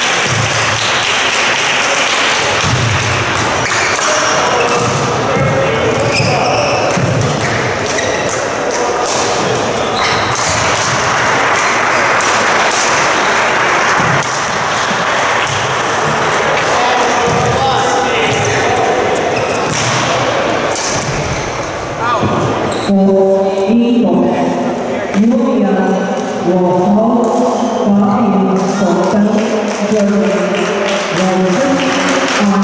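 Badminton rally in a sports hall: sharp racket hits on the shuttlecock and footfalls on the court floor over steady hall noise and voices. Near the end a louder pitched sound with held notes comes in over it.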